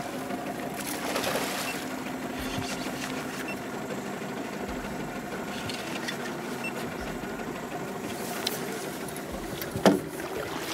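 Mercury outboard motor running steadily at low speed with an even hum, holding the boat while a king salmon is played on the line. Near the end a sudden loud thump.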